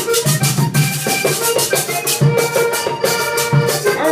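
Instrumental vallenato passage: a diatonic button accordion plays a melody of held notes over low caja drum hits and the fast, even scraping rhythm of a metal guacharaca.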